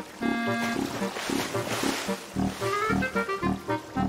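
Instrumental background music with a steady beat, with elephant sounds mixed in.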